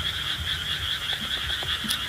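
A steady night chorus of frogs, an unbroken rapidly pulsing trill, over soft low rustling from hands working a catfish free of a net.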